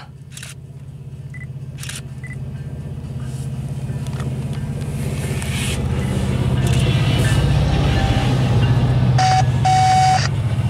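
Diesel freight locomotives passing slowly: a steady low engine rumble that grows louder as the lead Norfolk Southern SD70ACe and the trailing BNSF units draw alongside. Two short steady beeps sound near the end.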